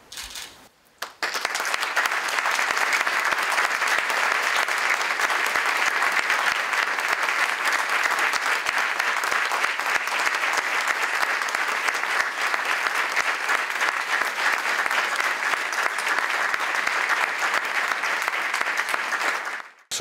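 Applause from a small audience, starting about a second in, running steadily, and cutting off suddenly near the end.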